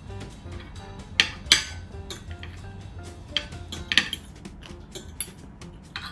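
Metal knife and fork clinking and scraping against a plate while food is cut, with several sharp clinks, the loudest about a second and a half in and again near four seconds. Quiet background music plays underneath.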